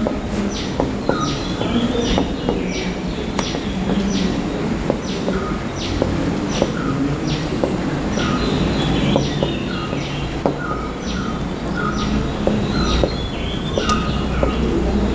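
Birds calling in an even series of short, high chirps, about two a second, over a steady low rumble.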